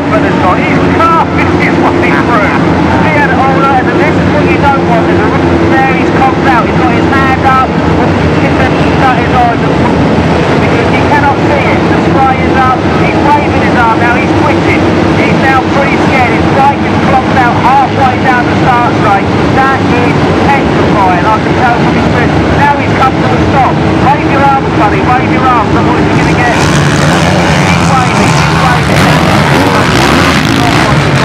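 A massed field of hundreds of off-road motorcycles (enduro and motocross bikes) racing at full throttle: a dense, continuous drone of many engines at once, their pitches constantly rising and falling as riders shift and rev. It grows brighter near the end as bikes come close.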